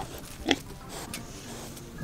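A young pig rooting with its nose in wood-chip mulch, giving one short, loud snort about half a second in.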